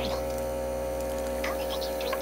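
A steady, even hum made of several held tones, unchanging in level.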